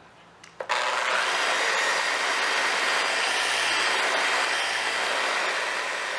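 Flex 3401 forced-rotation dual-action polisher running steadily on the paint with a white foam polishing pad. It starts suddenly about a second in.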